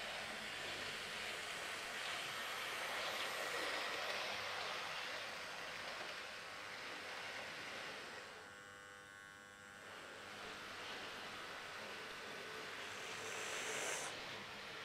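Hornby Class 06 OO-gauge model diesel shunter running slowly along the track, its small electric motor whirring and its wheels rolling on the rails. The sound dips quieter a little past the middle, then grows louder again near the end.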